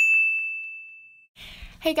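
A single bright ding, a bell-like chime struck once that rings out and fades away over about a second.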